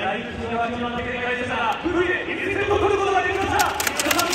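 A man speaking over an arena public-address system as the break music stops, with crowd murmur underneath and a few sharp clacks near the end.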